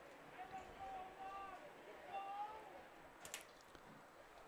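Faint, distant voices calling out across the field, in two drawn-out calls, with a brief sharp click a little after three seconds.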